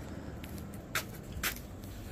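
Footsteps on pavement, three steps about half a second apart, over a steady low outdoor background rumble.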